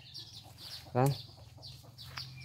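Faint, repeated clucking of chickens in the background.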